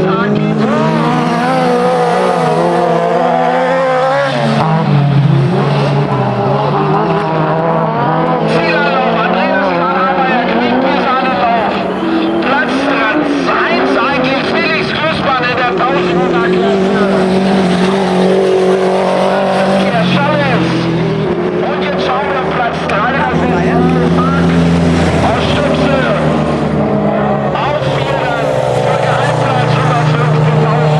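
Autocross racing cars on a dirt track, their engines revving up and down over and over as they accelerate and back off through the bends.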